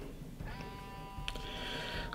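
A person's breath with a faint wheeze, a thin steady whistling tone of two or three pitches held for about a second and a half, the sign of allergy-tightened airways. A small click partway through.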